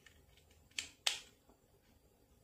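Two light, sharp clicks about a second in, roughly a third of a second apart: small handling clicks as a screwdriver and a plastic timer socket with wired pilot lamps are moved in the hands.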